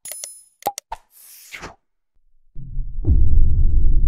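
Animation sound effects: short mouse-click sounds and a brief bell ding, then a soft whoosh, then a deep rumbling boom that starts about two and a half seconds in, hits hardest at three seconds with a falling sweep, and stays loud.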